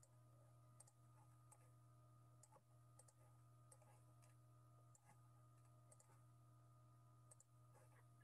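Near silence: faint, irregular clicks, about one every half second to a second, over a low steady hum.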